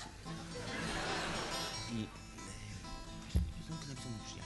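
Live room sound of an acoustic guitar ringing under voices, with a brief rise of crowd noise early on and a single sharp knock about three and a half seconds in.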